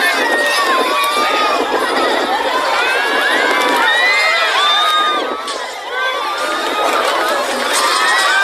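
A crowd of onlookers screaming and shouting in alarm, many voices overlapping in high, rising and falling cries, at a small child being carried into the air by a kite's tail.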